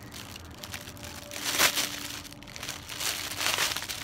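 Rustling and crinkling as a distressed baseball cap is handled and brought out, loudest about one and a half seconds in, with more rustling near the end.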